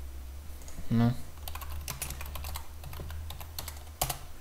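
Computer keyboard typing: a quick run of keystrokes starting about a second and a half in and lasting to near the end, as a short terminal command is entered.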